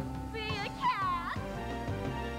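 Stage band music, with a performer's voice over it giving two short, sliding, animal-like cries, the second falling steeply in pitch.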